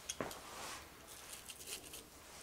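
Faint handling sounds as a small model car is brought in by hand and set down on the layout's grass and dirt scenery: a sharp click just after the start, then light rustling and small taps.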